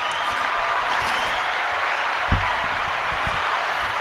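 Recorded crowd applause played as a sound effect from a podcast soundboard, a steady wash of many hands clapping, with a soft low thump about halfway through.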